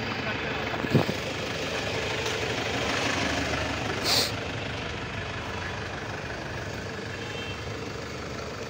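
Outdoor vehicle and traffic noise in a car park: a steady mixed hum, with a sharp knock about a second in and a short hiss about four seconds in.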